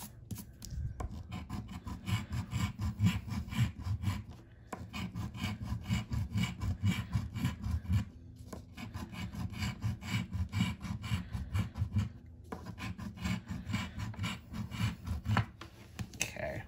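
A coin scratching the coating off a paper scratch-off lottery ticket on a wooden tabletop: quick back-and-forth scraping strokes in runs, with three short pauses between rows.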